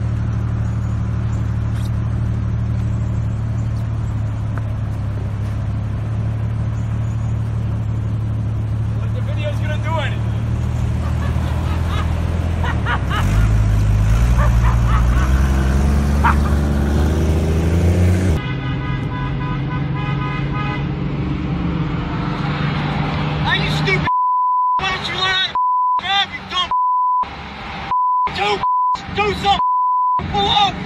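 A car engine running steadily, then climbing in pitch as it pulls away. After a sudden change, a short honk-like sound, then voices chopped up by a censor bleep that cuts in and out repeatedly.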